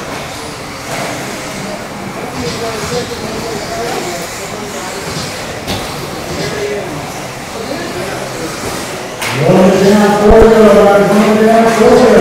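Echoing indoor hall ambience with a murmur of voices. About nine seconds in, a loud, steady droning sound with a voice-like pitch starts and holds to the end.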